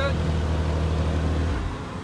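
McLaren 720S twin-turbo V8 with its stock sport exhaust idling steadily after a rev, then cutting out about one and a half seconds in.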